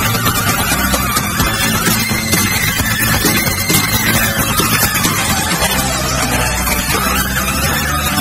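Progressive rock band playing a loud, dense instrumental passage without vocals, with held low bass notes under a busy wash of guitar and keyboards.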